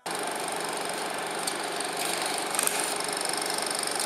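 A steady mechanical whirring rattle starts abruptly just after the music has faded out and runs on evenly, with a few faint ticks.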